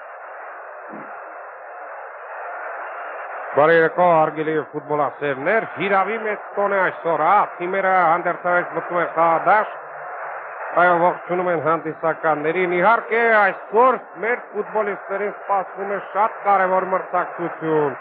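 A man speaking continuously in a narrating voice over a steady background hiss; for the first three and a half seconds only the hiss is heard.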